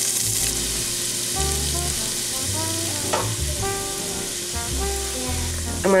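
Chopped onions and carrots sizzling steadily in hot fat in a nonstick stockpot, just added to the pan.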